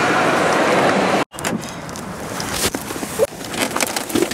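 A loud, steady rush of shopping-mall noise for about a second, cut off suddenly. Then comes the quieter inside of a car, with a few small clicks and knocks.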